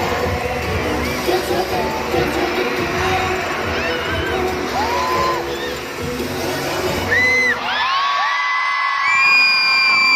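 Pop music over an arena sound system, with a crowd of fans screaming over it. About seven and a half seconds in, the music and its bass stop, leaving loud, high-pitched, sustained screaming from the crowd.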